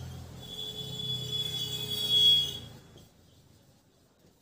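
Marker squeaking on a whiteboard as a word is written: one steady high squeak lasting about two seconds, loudest near its end, then it stops.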